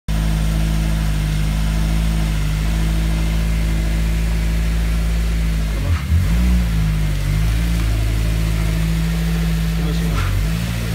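Caterham Seven engine idling steadily, with a short dip and rise in engine pitch about six seconds in as the car pulls forward out of the garage.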